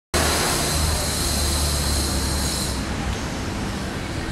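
Steady city street noise: a low traffic rumble under a high hiss that eases near the end.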